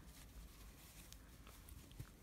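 Near silence: room tone, with a few faint soft sounds of hands handling a crocheted baby hat.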